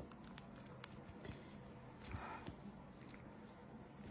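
Faint soft squishing and a few light clicks of a silicone spatula spreading thick dip in a ceramic baking dish.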